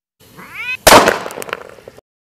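A cat's short meow rising in pitch, followed almost at once by a sudden loud bang, the loudest sound, which trails off with a few sharp crackles.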